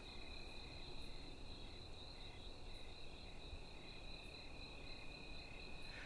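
Crickets chirping, faint and steady: a continuous high trill with a regular pulsing chirp beneath it.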